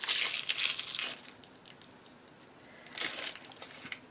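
Packaging crinkling as it is handled: a crackly burst lasting about a second, then quiet, then a shorter crinkle about three seconds in.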